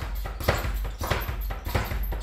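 Speed bag being punched, knocking against its overhead rebound platform in a steady rhythm of quick knocks, a few each second.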